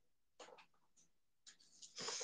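Near silence: room tone, with a few faint, brief noises about half a second in and again near the end.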